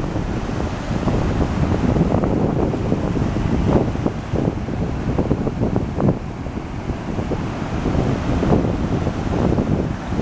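Wind buffeting the microphone in uneven gusts, over the continuous rush of surf breaking on a rocky shore.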